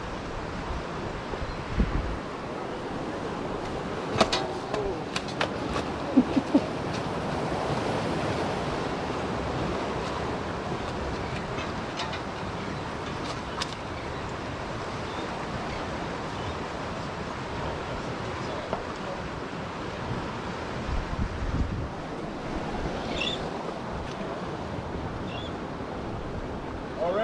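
Steady wash of ocean surf and wind blowing across the microphone, with a few sharp clicks and knocks in the first half.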